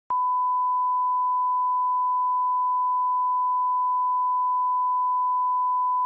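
A steady test tone: one pure, unbroken beep held at a constant pitch and level, starting with a brief click.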